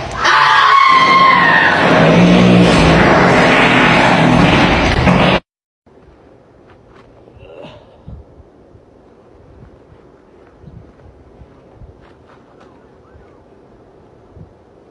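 A loud, harsh, rushing noise with a squealing glide near its start. It lasts about five seconds, cuts off abruptly, and is presented as a man's explosive flatulence in a toilet stall. Then comes a quiet outdoor background with a few faint ticks.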